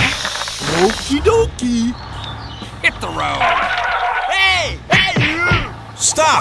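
Cartoon-style sound effects and squeaky, voice-like noises over background music, with many quick rising and falling pitch glides.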